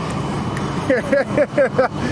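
A young man laughing in a quick run of short bursts, starting about halfway through, over a steady low rumble.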